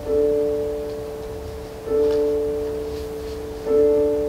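Piano accompaniment playing three held chords struck about two seconds apart, each ringing on and slowly fading before the next.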